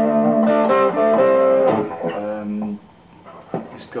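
A 2006 Gibson ES-335 Diamond semi-hollow electric guitar with '57 Classic pickups, playing a short run of ringing notes and chords. The notes fade out after about two seconds, and a couple of soft clicks follow near the end.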